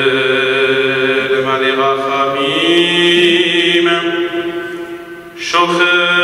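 A man's solo voice chanting in long held notes, in the manner of a cantor's liturgical chant. It steps up to a higher note about halfway through and breaks off briefly for breath near the end before carrying on.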